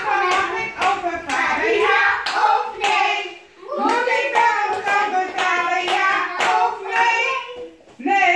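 Hand clapping in a steady beat, with voices singing along.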